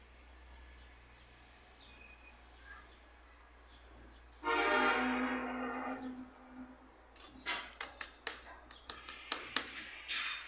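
A budgerigar in its cage chirping, faint at first, then a quick run of short, sharp calls over the last three seconds. About halfway through, a loud, steady horn-like tone sounds for about a second and a half.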